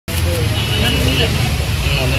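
Street ambience: a steady low traffic rumble with the voices of several people talking in the background.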